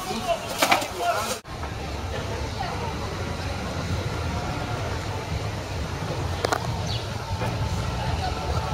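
Outdoor street ambience: indistinct voices and a steady low rumble, with a short clatter near the start.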